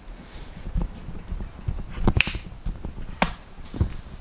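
Footsteps and camera-handling knocks while the camera is carried through a home garage gym: a few irregular low thumps and clicks, the sharpest about two seconds in and another just after three seconds.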